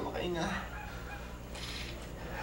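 A person's wordless, wavering cry of distress right at the start, then a short hissing breath about a second and a half in.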